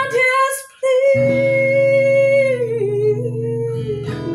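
A woman singing with a strummed acoustic guitar. The guitar stops briefly and comes back in about a second in, under a long sung note that bends downward partway through.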